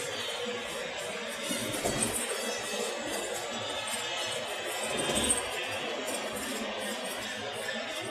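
A song with singing plays on the car stereo inside a moving car, over steady road noise.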